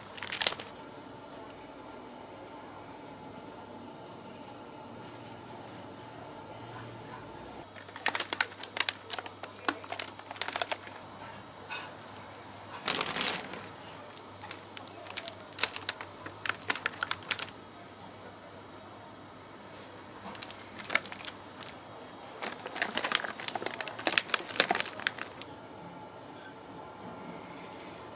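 Crinkling and rustling of thin plastic plant trays being handled in scattered bursts as violas are pulled from their cells and set into compost.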